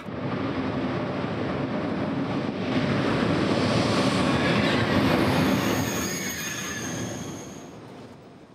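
SNCF TGV high-speed train moving along a station platform: a steady rumble of wheels on rail that swells to its loudest about halfway through. Thin high wheel squeals come in around the middle, then the sound fades away near the end.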